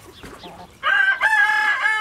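A rooster crowing: one long, steady crow starting about a second in.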